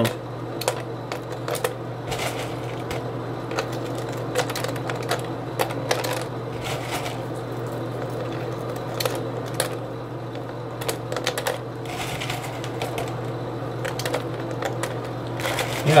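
Small pieces of lava rock dropped one at a time into a small plastic water bottle, making irregular light clicks and rattles against the plastic, over a steady low hum.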